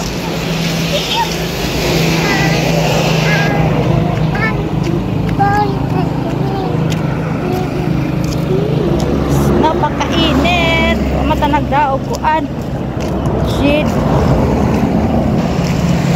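Steady engine hum of motor vehicles by the road, with a young child's high voice chattering on and off over it, busiest about two-thirds of the way in.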